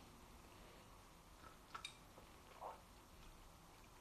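Near silence: faint room tone with two brief faint clicks, a little under two seconds in and again about a second later.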